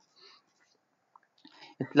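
Near silence: a pause in lecture speech, with the speaking voice starting again near the end.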